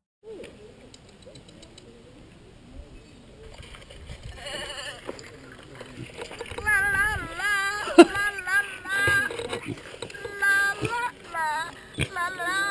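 High-pitched voices singing with a fast, wavering vibrato. They fade in about four seconds in over faint background noise and grow loud about six seconds in, with a sharp click about eight seconds in.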